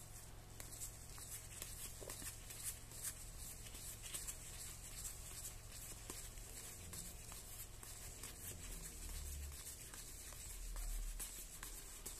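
Faint rustle and many small clicks of a deck of Star Wars CCG trading cards being leafed through by gloved hands, card sliding over card.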